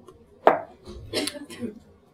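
A man coughing: one sharp cough about half a second in, then a few shorter, softer ones.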